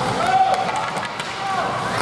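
Ice hockey game in a rink: short shouts from players and spectators over sharp clicks of sticks and puck on the ice.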